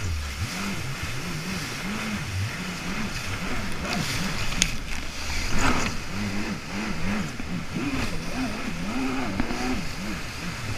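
Jet ski engine revving up and down again and again as the throttle is worked through rough surf, over the rush of water and spray. Two sharp slaps about halfway through.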